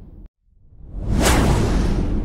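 Whoosh sound effect from an animated video intro: the sound cuts out briefly, then a rush of noise with a deep rumble under it swells up about a second in and slowly fades.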